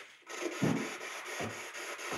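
Footsteps on a hard floor, a few soft thuds, with clothing rustling and brushing close by as a person walks past.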